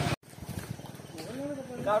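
Men's raised voices cut off abruptly just after the start by an edit. Low background noise follows, and about a second and a half in a man's voice starts again.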